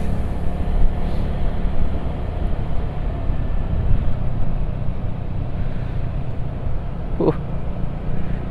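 Motorcycle riding noise heard from the rider's own bike while cruising: a steady low engine hum under a constant rumble of road and wind noise. A brief vocal sound comes near the end.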